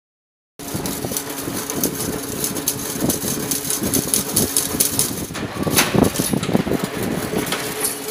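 Double-wire chain link fence making machine running: a steady motor hum under rapid, continuous metallic clattering from the wire-weaving mechanism, with a louder clank about six seconds in.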